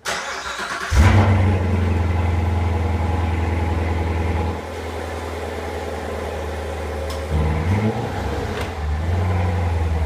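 A C7 Chevrolet Corvette Stingray's 6.2-litre V8 turns over on the starter and catches about a second in with a loud flare. It then runs at a fast idle that drops to a lower idle a few seconds later. Near the end it gets a short rev and settles back to idle.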